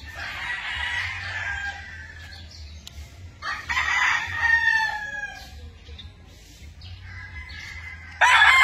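Gamecock crowing twice: one crow at the start and another about three and a half seconds in, each trailing off lower in pitch at the end.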